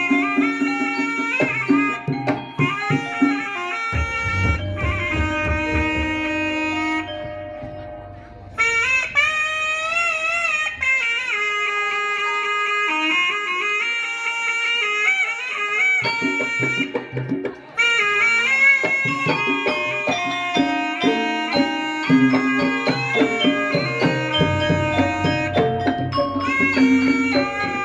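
Javanese ebeg gamelan music: a slompret (reed shawm) plays a wavering, nasal melody over kendang hand-drum strokes. Deep gong strokes ring out about four seconds in and again near the end, and the melody briefly drops out twice.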